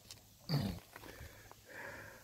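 A short nasal snort from a man about half a second in, followed by a few faint clicks of pebbles as stones are picked out of creek gravel.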